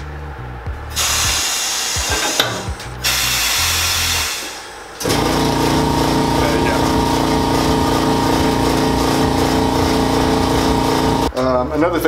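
Two bursts of air hiss from a pneumatic sole press. About five seconds in, a shop air compressor kicks on abruptly and runs loudly and steadily, a pulsing motor hum with a steady tone, until near the end.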